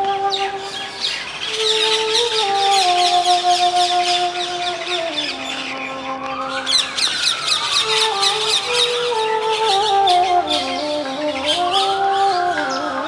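Bansuri (side-blown bamboo flute) playing a slow melody of long held notes that step up and down, over a dense chorus of chirping birds. A call that rises and then falls in pitch sounds twice, about six seconds in and again near the end.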